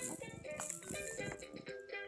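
Baby's electronic activity toy playing a chirpy tune in steady stepped notes, with rattling and knocking as the camera is grabbed and jostled.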